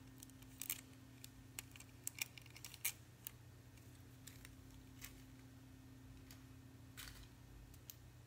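Faint, scattered clicks and taps of plastic nail tips and long acrylic fingernails being handled, with several sharp ones in the first three seconds. A low steady hum runs underneath.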